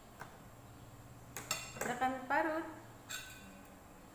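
A metal knife and a flat metal grater clinking and scraping against a ceramic plate. A cluster of sharp, ringing clinks comes about a second and a half in, and one more clink follows about three seconds in.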